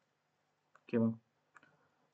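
A single short voiced syllable from a man's voice about a second in, with a faint click just before it and a few faint clicks after it.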